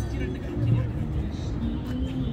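City street ambience: passers-by chatting over a steady rumble of traffic.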